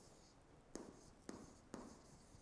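Faint taps and scrapes of a stylus on a tablet screen during handwriting: three short ticks, the first under a second in.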